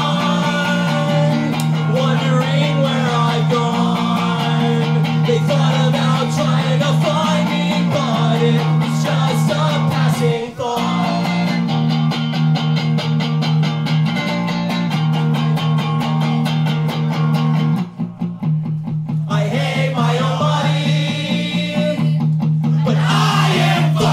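Solo electric guitar strummed in steady chords with a man singing over it, a live punk-rock song. The playing drops out briefly about ten seconds in and again for about a second near eighteen seconds.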